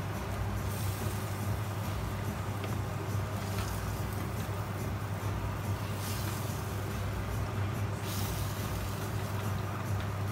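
Stock simmering in a paella pan over a gas burner: a steady low hum and hiss, with brief swells of hiss a few times.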